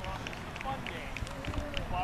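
Indistinct chatter of several people's voices in the open, scattered and overlapping, with a few faint clicks.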